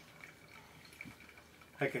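Brewed coffee dripping from a ceramic pour-over cone into a mug, a few faint, soft drips.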